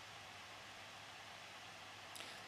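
Near silence: a faint, steady hiss of room tone with a low hum.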